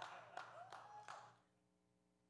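Near silence: a few faint clicks and a faint voice in the room during the first second or so, then silence with a faint steady hum.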